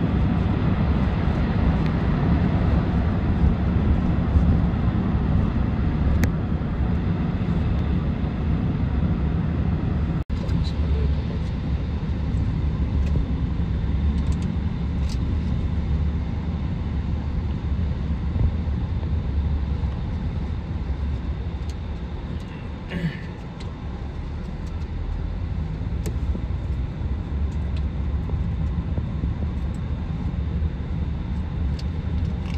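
Steady low road and engine rumble heard from inside a car's cabin at highway speed, somewhat louder in the first third, with a momentary dropout about ten seconds in.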